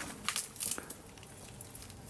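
Pepper plant leaves rustling and crinkling as a hand pushes in through the foliage. A few short crackly rustles come in the first second, then it goes quieter.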